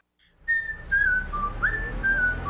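A whistled jingle tune of short notes that step and slide up and down in pitch, over a low backing track. It begins about half a second in, after a brief silence.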